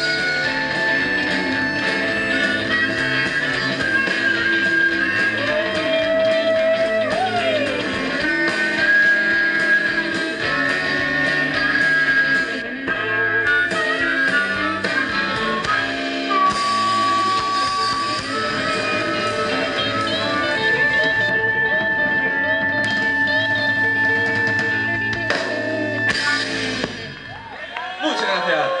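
Live rock band playing: electric guitars, bass guitar and drum kit, with long held notes and a bending lead line. The music quietens near the end as the song finishes.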